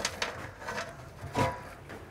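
A few light clicks and clinks of small rusty bolts being handled and picked up one at a time, the clearest about halfway through.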